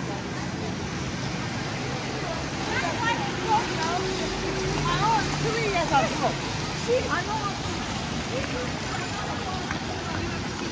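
Busy wet-street ambience: a steady hum of traffic and tyres on the wet road, with passers-by talking close by in the middle stretch.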